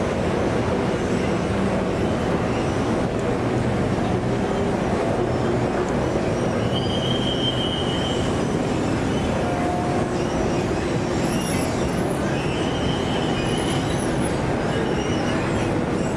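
Steady, continuous roar of road traffic from a busy street below, with a few faint high whistles briefly above it.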